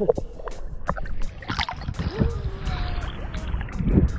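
Choppy seawater slapping and splashing around a camera held at the water's surface, with irregular splashes from a swimmer's strokes.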